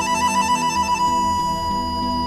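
Music for a stage dance: a wind instrument plays a fast trill for about a second, then holds one long note over a steady low drone.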